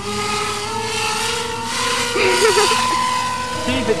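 Electric motors and propellers of an RC F-35 STOVL foam model jet whining steadily at part throttle during a hand launch into a hover. The pitch rises a little partway through as the throttle is eased up.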